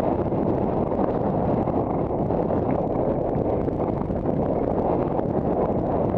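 Steady wind noise buffeting a helmet-mounted action camera's microphone while riding a horse at a canter.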